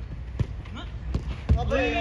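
A football kicked on artificial turf: a few dull thuds, the loudest about one and a half seconds in, around a close-range shot and the goalkeeper's save. Players' voices break into a shout near the end.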